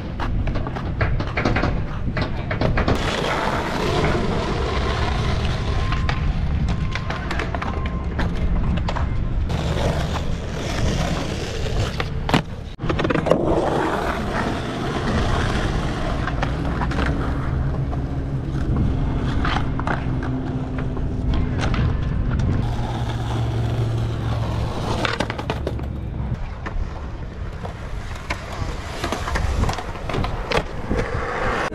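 Skateboard wheels rolling on a concrete skate park surface, a steady rumble with scattered clicks and clacks of the board, and one sharp knock a little before halfway.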